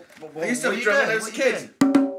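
A voice, then near the end a djembe is struck by hand: two sharp hits that start a quick beat.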